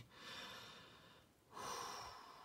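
A man breathing audibly close to the microphone: two soft breaths about a second each, the second starting about a second and a half in.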